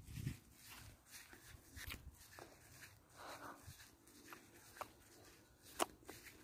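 Near silence with faint rustling and soft clicks, and one sharper click shortly before the end: handling noise on a hand-held phone.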